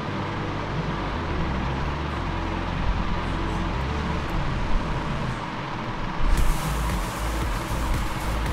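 Royal Enfield Himalayan's single-cylinder engine running at low revs as the bike moves slowly over a loose rocky trail, a steady low rumble. A rushing hiss joins about six seconds in.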